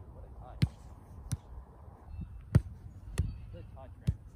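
Soccer ball struck by players' feet in a quick passing drill: four sharp thuds, the loudest a little past the middle.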